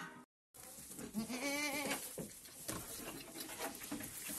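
A goat bleats once about a second in, a single wavering call lasting under a second, followed by soft knocks and rustling in straw.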